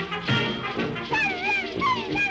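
Orchestral cartoon music; about a second in, the cartoon baby dolls start crying, wavering wails that swoop up and down over the music.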